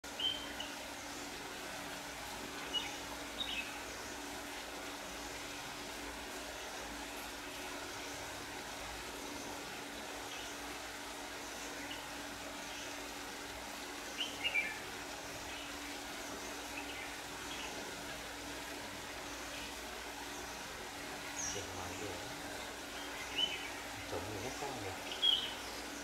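Red-whiskered bulbul calls: short chirps every few seconds, with a long gap in the middle, over a steady background hiss and a faint low hum.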